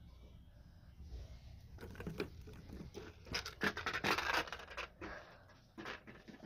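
Plastic toys being handled and moved about: rustling and scraping, with a dense run of light knocks and scratches from about two to five seconds in, fainter before and after.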